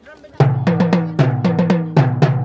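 Marching tenor drums struck with felt mallets, playing a quick rhythmic run of strokes that starts about half a second in, each stroke ringing with a low drum tone.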